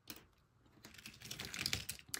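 Chipboard die-cut pieces clicking and rustling against one another and a wooden tabletop as they are picked through by hand: a run of light, irregular clicks that grows busier after the first half second.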